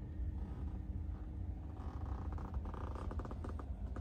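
Low steady rumble inside a parked car's cabin, with a run of quick, faint clicks and rustles in the second half from a phone being handled and moved.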